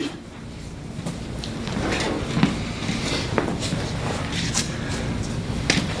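Scattered light knocks and scuffs, about one every second, from people moving about on a training floor, over a steady low room hum.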